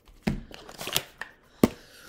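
A cardboard tarot deck box being handled and opened: a few short rustles and scrapes, then a sharp tap near the end.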